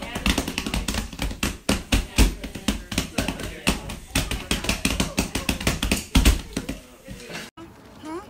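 Hands slapping rapidly on the back of a leather couch, many quick, irregular slaps that stop suddenly near the end.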